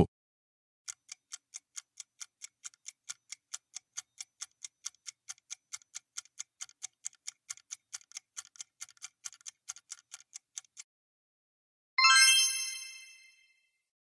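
Countdown-timer ticking sound effect, about four even ticks a second for ten seconds, then a single bright chime ringing out and fading, marking the end of the countdown and the reveal of the answer.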